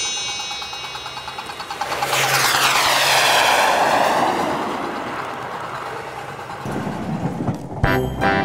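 Hornby 00 gauge model train running past close by on its track. The wheels rattle over the rails and the motor hums, swelling as it passes about two to four seconds in, then fading away.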